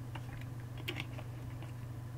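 A few faint, scattered clicks over a steady low hum, in a pause between spoken sentences.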